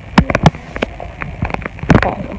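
Irregular sharp knocks and clicks of handling noise on a hand-held phone's microphone as it is carried about, loudest just after the start and near the end.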